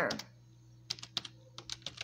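Typing on a computer keyboard: a handful of separate light keystrokes, bunched from about a second in, as a word is typed one letter at a time.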